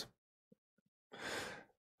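A man's single short breath, about half a second long, a little past the middle; otherwise near silence.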